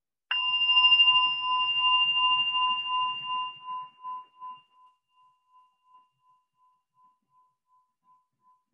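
A single strike of a meditation bell, a singing-bowl-type bell, ringing with a pulsing tone that fades away over about five seconds. It marks the end of the sitting meditation period.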